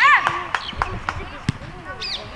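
A short shout from the sideline, then scattered sharp knocks over faint voices. The loudest knock comes about a second and a half in.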